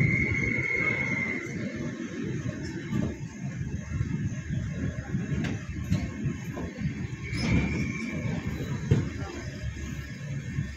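Passenger train coaches rolling slowly over the rails with a low rumble as the train brakes, and a steady high brake squeal for about a second and a half at the start and again about seven seconds in.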